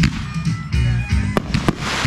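Fireworks firing over loud recorded country-rock music: sharp reports at the start and two more close together about a second and a half in, then a dense crackle near the end as a volley of comets goes up.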